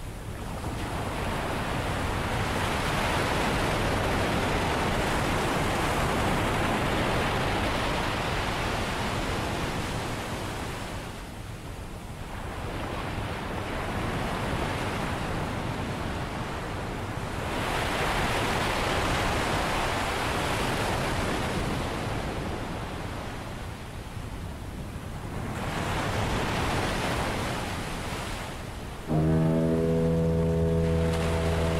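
Ocean surf washing in slow swells, rising and falling about four times. About a second before the end a fog horn starts, a deep, steady blast.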